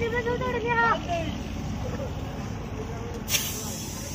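A voice calls out briefly over steady low outdoor background noise. Near the end a sudden hiss comes in.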